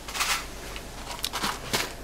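A handmade paper box of buttons and brads being handled and set into a plastic drawer: a papery rustle at the start, then a few light clicks.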